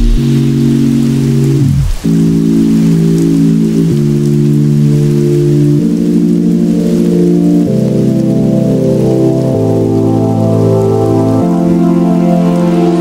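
Electronic background music in a sparse, beatless passage: sustained synth chords changing about every two seconds, with a falling sweep just before two seconds in.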